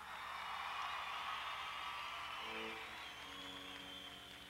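Concert audience cheering and clapping for a newly introduced band member, slowly fading, with a few high whistles near the end. A short pitched chord sounds about two and a half seconds in, followed by a held note.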